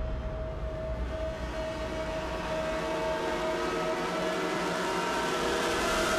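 A synthesized drone, a held electronic tone, is joined about halfway through by several more sustained tones stacked above and below it. It slowly grows louder, like a tension-building sting leading into a report.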